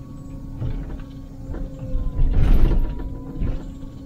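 Liebherr 904 excavator heard from inside its cab: the diesel engine and hydraulics run with a steady tone while the bucket knocks and scrapes against rock. A louder grinding crunch of rock comes about two and a half seconds in.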